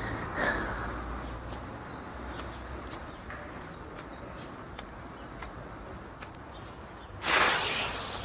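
Low background with a few faint ticks, then about seven seconds in a loud hiss lasting about a second.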